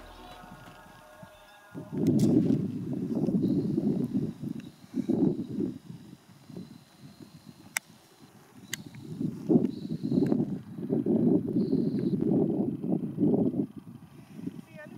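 Background music fades out in the first couple of seconds. Then gusts of wind buffet the camera microphone as an uneven low rumble, easing off for a few seconds in the middle before picking up again.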